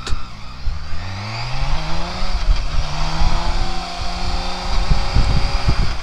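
2012 BMW K1600GT's inline-six engine accelerating out of a roundabout. Its pitch rises for about two seconds, then holds steadier after a gear change. Low wind rumble on the microphone grows in the second half as speed builds.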